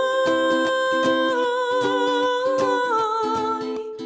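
A woman singing a wordless held melody over a strummed ukulele. Her voice sustains long notes that fall in steps, about a third and again near the three-quarter mark.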